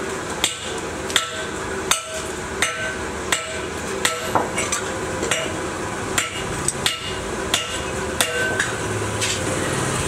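Hammer striking metal at a steady pace, about one ringing blow every 0.7 seconds, over a steady rushing background noise.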